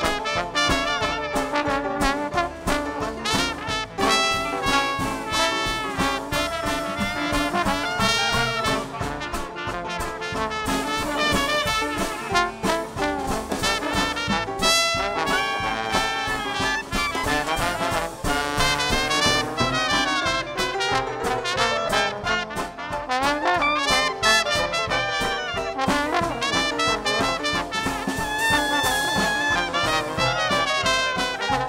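Live traditional Dixieland jazz band playing an instrumental with a ragtime flavour: trumpet, trombone and clarinet weaving melodic lines over banjo, string bass and drums keeping a steady beat.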